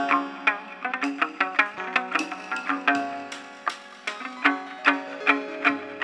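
Chầu văn instrumental interlude between sung verses: a plucked moon lute (đàn nguyệt) playing a quick, lively run of ringing notes over a steady low note.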